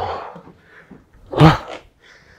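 A man out of breath from stair-climber exercise: a breathy exhale at the start, then a loud groaning exhale that falls in pitch about a second and a half in.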